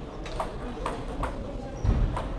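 Table tennis ball clicking on a table or bat three times, about every half second, over the chatter of a busy sports hall. A dull thump comes near the end.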